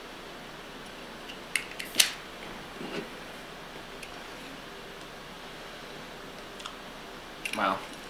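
Sharp metallic clicks of a Zippo Blue butane lighter being worked, two about a second and a half and two seconds in and a softer one around three seconds, over a steady low hiss of room noise.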